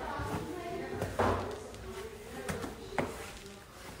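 Quiet, indistinct voices, with a louder breathy sound about a second in and two sharp clicks near the end.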